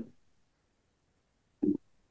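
A pause in a conversation, near silent for about a second and a half. Near the end comes one brief, low vocal sound, a short murmur from a listener.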